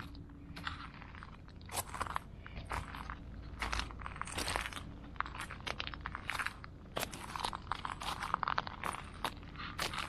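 Footsteps crunching on a gravel-and-sand sandbar, one crunching step after another at a walking pace.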